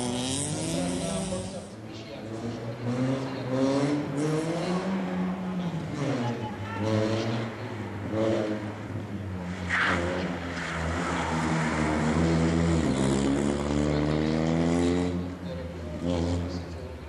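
Peugeot 106 rally car engine revving hard under load, its note climbing and dropping over and over with gear changes and lifts off the throttle as the car drives the stage.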